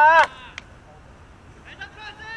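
Children's high-pitched drawn-out shouts, team calls from a youth baseball game: one long loud call at the start, then another shorter call near the end.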